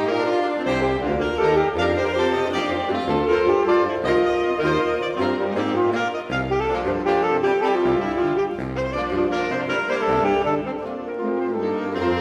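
Saxophone septet (soprano, three altos, two tenors and baritone) playing a folk-song arrangement in close harmony, sustained chords moving from note to note over the baritone's low bass line.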